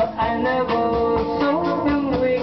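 A live band playing: an electric guitar carries a melodic line over a drum kit keeping steady time.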